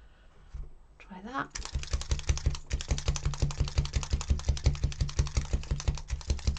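Needle felting tool stabbing rapidly into wool tops on a brush mat, a fast even crunching of about eight stabs a second that starts about a second and a half in. This is the wool of a butterfly being felted down flat.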